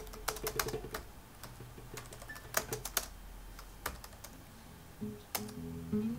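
Typing on a computer keyboard: irregular key clicks, a quick run in the first second, then sparser single strokes. Music comes in about five seconds in.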